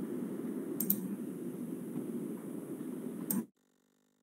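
Steady low hiss from an open computer microphone, with two sharp mouse clicks, one about a second in and one near the end. The sound then cuts off abruptly as the presenter's audio feed ends when he leaves the video call.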